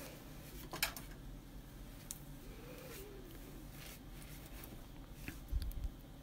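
Quiet room with a few faint clicks and light knocks of small objects being handled, and a soft low thump near the end.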